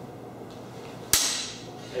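A single sharp clash of longsword blades, a cut met by a parry, about a second in, with a brief ringing tail.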